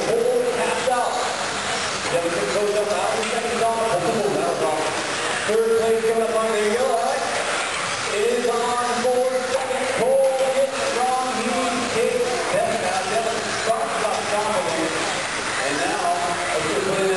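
A man's voice talking continuously and indistinctly, echoing in a large hall, over the steady noise of electric 1/10-scale RC buggies racing on an indoor dirt track.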